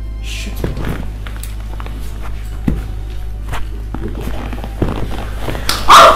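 Background music with a steady low drone, under scattered light knocks and taps of movement on a leather sofa. Near the end comes a short, loud cry from a woman.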